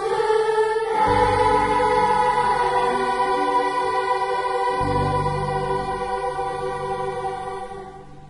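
Children's school choir holding long sustained notes over instrumental accompaniment, with the bass changing twice, then fading out near the end as the song closes.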